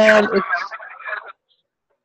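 A voice holding a drawn-out vowel at a steady pitch, breaking into short fragments and stopping about a second and a half in.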